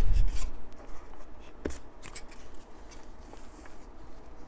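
Balsa wood tail parts handled and fitted together on a building board: a soft knock at the start, then a few light clicks and wood rubbing on wood.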